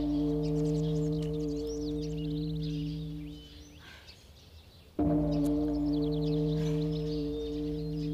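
A large temple bell struck twice, each stroke ringing with a low hum for about four seconds. The first fades out about three and a half seconds in and the second strike comes about five seconds in. Birds chirp faintly throughout.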